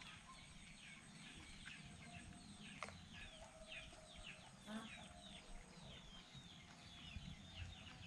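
Faint peeping of farmyard fowl: a long run of short, falling chirps, several each second, with a single sharp click about three seconds in.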